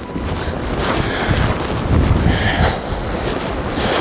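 Wind buffeting the microphone: a loud, steady low rumble that drowns out the other sounds.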